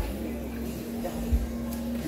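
Music with a long held note and a low thump about every second and a half.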